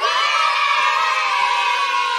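Edited-in sound effect of a group of children cheering a long held "yay", starting suddenly out of silence and running at a steady loud level.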